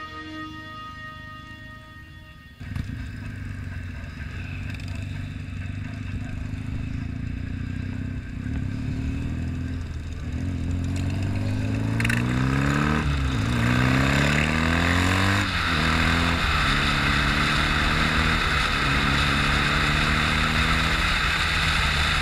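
Background music fading out, then a BMW R nineT's boxer-twin engine with an aftermarket Wunderlich exhaust pulling through the gears: the pitch rises, drops at a shift about halfway through, rises and drops again shortly after, then holds steady at cruising speed with wind rush on the helmet microphone.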